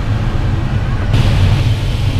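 Steady rush of airflow around a glider's canopy and cockpit in flight, heavy in the low end. A brighter hiss joins abruptly about a second in.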